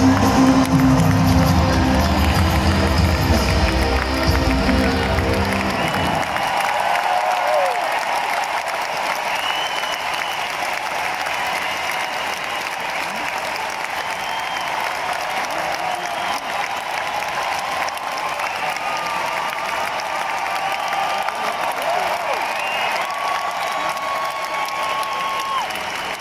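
A live rock band with piano, drums and guitar holds its final chord for about six seconds, and it stops suddenly. A large arena crowd then applauds and cheers steadily.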